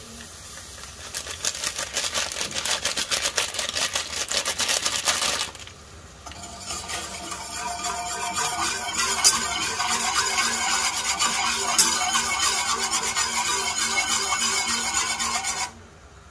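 Wire whisk stirring jelly powder into hot water in a steel saucepan: rapid clinking and scraping of the wires against the pot. It pauses briefly about five seconds in, resumes, and cuts off suddenly just before the end.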